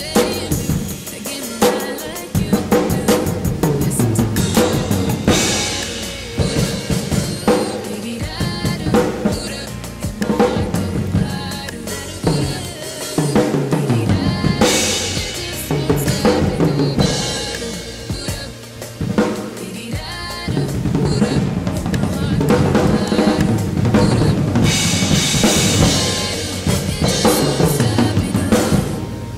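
Gretsch acoustic drum kit played along to a recorded R&B song: kick, snare and rimshot hits over the track's bass and vocals. Cymbal crashes swell up three times along the way.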